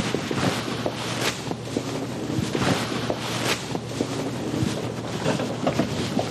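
Wind buffeting an outdoor microphone over the bustle of a crowd settling into chairs, with scattered knocks and footsteps.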